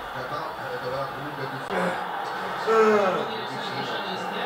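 Sound of a football match on television: voices over a steady crowd background, with one drawn-out call falling in pitch about three seconds in.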